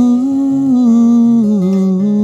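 A man's wordless humming, a held melody that steps slowly downward in pitch, over a fingerpicked 12-string acoustic guitar with steadily repeated low bass notes.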